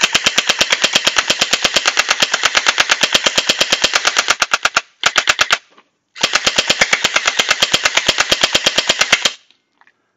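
Battery-powered Desert Eagle-style gel blaster firing gel beads on full auto, a rapid even rattle of shots. It fires in three bursts: a long one of about five seconds, a short half-second one, then one of about three seconds.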